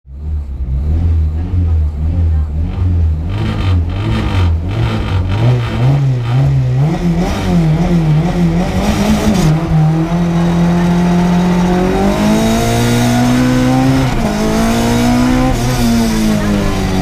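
Rally-prepared Renault Clio Williams' 2.0-litre four-cylinder engine heard from inside the cabin. It revs unevenly at low revs at first, then accelerates hard with climbing revs, with a gear change about three-quarters of the way through.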